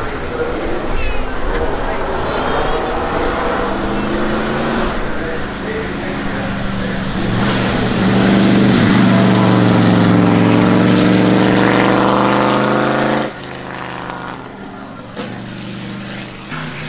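Supercharged 3.2-litre straight-eight engine of a 1934 Alfa Romeo P3 'Tipo B' running at the start line and then pulling away under power. It is loudest for about five seconds past the middle, then drops off sharply shortly before the end.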